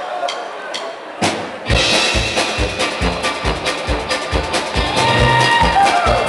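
Live brass band with drum kit starting a tune: a few sharp clicks and knocks, then about two seconds in a steady kick-drum beat comes in, about two beats a second, with brass and other instruments playing over it.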